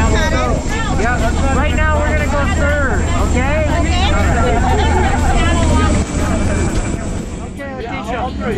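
Propeller plane's engine droning steadily inside the cabin, with people's voices talking and calling out over it. The low drone eases near the end.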